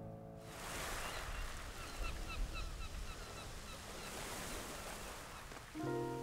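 Outdoor ambience: a steady rush of wind with a bird chirping over and over in short calls. Background music fades out at the start and a new music cue comes in near the end.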